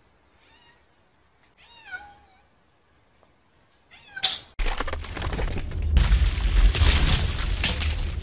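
A cat meowing three times, about half a second, two seconds and four seconds in; the middle meow is the longest and loudest. Then, about four and a half seconds in, a loud rumbling, crashing sound effect of breaking rocks starts suddenly and grows louder.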